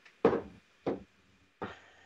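Three short knocks, about two-thirds of a second apart, the first the loudest, each dying away quickly.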